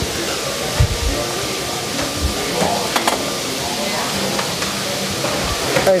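Steady hiss of a working restaurant kitchen, with a few dull knocks and one sharp click as a wooden spoon scoops thick grits out of a pan onto a plate.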